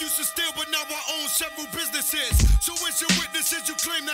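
Hip hop track: a rapper's voice over a beat with sustained instrumental notes, and deep bass hits coming in a little past halfway.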